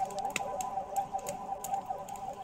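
A fire crackling with irregular small ticks and pops over a steady high-pitched hum.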